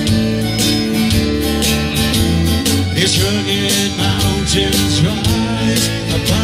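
Live country-folk band music: a strummed acoustic guitar in a steady rhythm over a second, electric guitar-family instrument with a low bass line.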